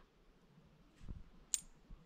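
Faint handling rustle, then one short metallic click as two corroded coins touch each other in an open palm.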